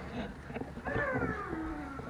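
A person's voice making one drawn-out, falling vocal sound, like a long "ooh", about a second in.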